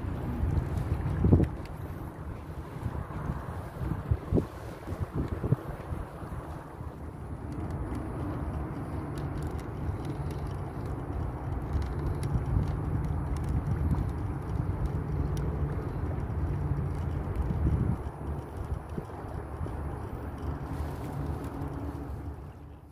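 Small outboard motor running steadily as an inflatable boat travels, with wind buffeting the microphone. A few sharp knocks come in the first few seconds.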